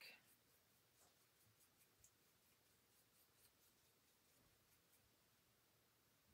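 Near silence, with faint, irregular strokes of a small paintbrush dabbing paint onto a wooden craft piece.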